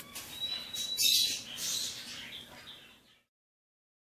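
Ten-day-old budgerigar chick making high-pitched, raspy cheeps. The sound stops abruptly a little after three seconds in.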